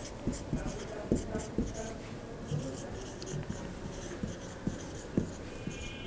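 Marker pen writing on a whiteboard: a run of short, scratchy strokes with light taps as words are written.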